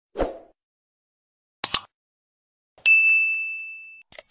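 Sound effects of a subscribe-button animation: a soft thump, a quick double click about a second and a half in, then a bright bell ding that rings and slowly fades.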